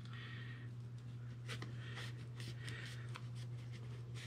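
Faint rubbing and a scatter of light clicks as a rubber pour spout is worked onto the rim of a metal gallon paint can, over a steady low hum.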